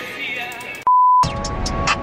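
Background music cut by a short, loud, single-pitch beep about a second in; after the beep the music goes on over a low rumble.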